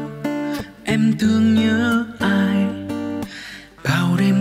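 Two acoustic guitars playing an instrumental passage of a Vietnamese pop ballad: strummed and picked chords in groups, with short drops in loudness between them.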